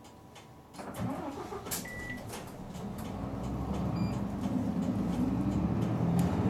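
City bus diesel engine pulling away from a stop, heard from inside the bus. Its note climbs steadily in pitch and loudness from about three seconds in as the bus accelerates. A short beep sounds about two seconds in, among scattered clicks and knocks.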